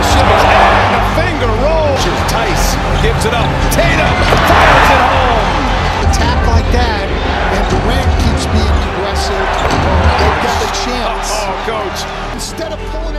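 NBA game sound from the arena: a basketball dribbled on a hardwood court with sneakers squeaking repeatedly and crowd noise, over steady background music.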